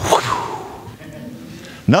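A single sudden whip-like swish and crack near the start, trailing off into a fading hiss.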